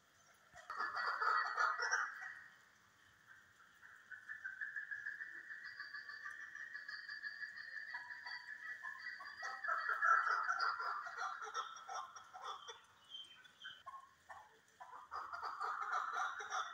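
Chukar partridges calling, a rapid run of repeated chuck notes. A short loud burst about a second in, then a long run of calls, peaking around the middle, and another run starting near the end.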